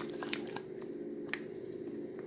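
Sliced fennel tipped from a plastic measuring cup into a pot: a few soft crackles and sharp little knocks as the pieces land and shift, over a steady low hum.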